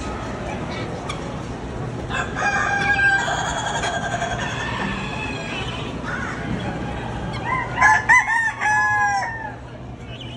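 Roosters crowing: one held crow about two seconds in, lasting about a second and a half, and a louder crow near the end broken into short rising-and-falling notes, over the steady murmur of a poultry barn.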